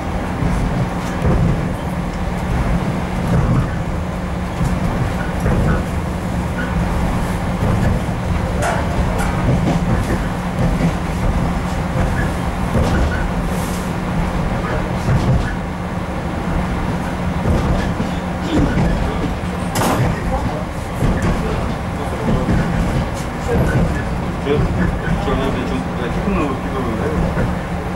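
Inside an RA2 diesel railbus under way: steady engine and wheel-on-rail running noise, with a sharp knock about twenty seconds in.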